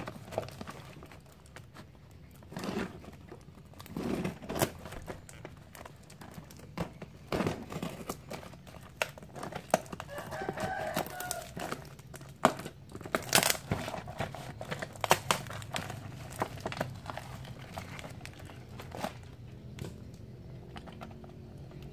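Plastic courier mailer and its packing tape being handled and torn open by hand: a string of irregular crinkles and sharp rips.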